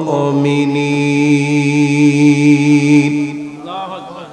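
A man's voice chanting in the melodic style of a Bangla waz sermon, holding one long, slightly wavering note that fades out after about three seconds.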